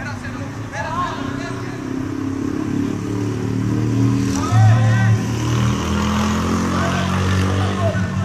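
A motor engine runs steadily and is loudest around the middle. Short shouts from players rise above it a second in and again midway.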